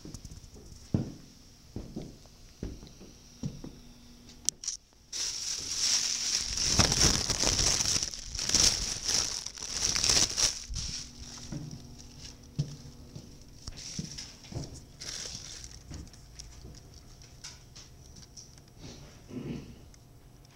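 Cloth rustling and rubbing right against the microphone, after a few scattered knocks. It turns loud about five seconds in and dies down after about eleven seconds.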